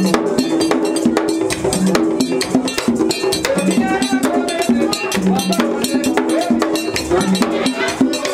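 Haitian Vodou ceremonial music: a metal bell struck in a fast, steady pattern over hand drums, with voices singing a melody for the dance.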